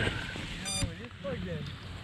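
The lost-model buzzer of a crashed FPV racing drone gives one short, high-pitched beep about two-thirds of a second in. The drone is being handled, and rustling and low rumble from its onboard camera mic are heard along with it.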